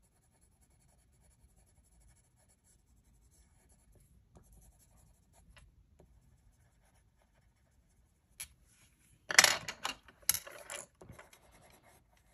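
Coloured pencil scratching faintly on paper as a stamped image is shaded in with small strokes. Near the end come a few louder clacks as pencils are picked up and swapped.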